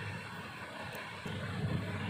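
Faint steady background noise and low hum from the narrator's room, with a slightly louder low rumble coming in about a second in.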